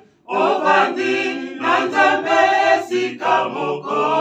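Small mixed choir of women and men singing a cappella, with no instruments, in short phrases separated by brief breaks; the singing resumes just after a moment's pause at the start.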